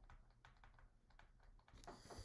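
Faint, irregular clicks and taps of a stylus on a drawing tablet as handwriting is written, a little louder near the end.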